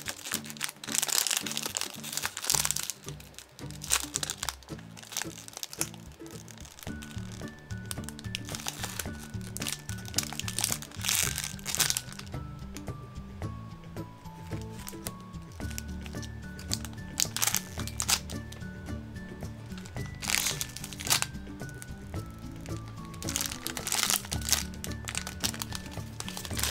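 Clear plastic squishy bag crinkling in the hands in repeated spells, heard over background music with a repeating bass line and a slowly falling melody.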